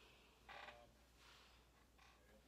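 Near silence: room tone, with one faint brief sound about half a second in.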